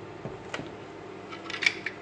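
Light clicks of plastic and metal being handled, with a quick cluster of sharp rattling clicks from about a second and a half in, as a Philips Senseo milk frother's whisk insert and jug are set up.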